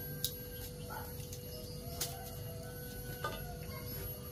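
A few light clicks and knocks of pots being handled, the sharpest about two seconds in, over a low steady background rumble, with faint chicken clucks in the distance.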